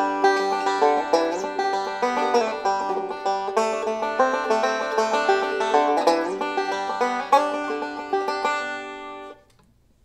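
Five-string banjo fingerpicked bluegrass-style in quick rolls, playing a D7 lick whose seventh (a C note) adds tension. The playing stops suddenly near the end.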